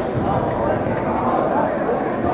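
Fencers' feet thudding and stamping on a wooden gym floor during a foil bout, over the murmur of voices in a large hall. A faint steady high tone sounds from about half a second in until near the end.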